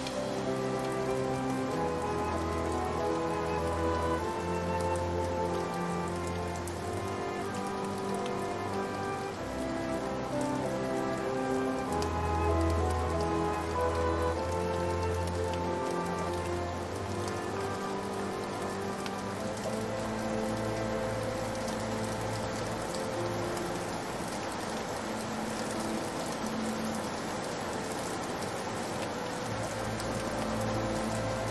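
Slow piano music with long, held low bass notes, played over a steady sound of falling rain.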